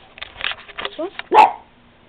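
Pet dog making a run of short yips with rising pitch, then one louder bark about one and a half seconds in.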